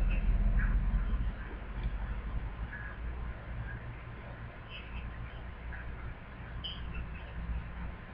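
Steady low room rumble from a webcam microphone, with a few faint, thin snatches of the caller's voice leaking from a cell phone's earpiece.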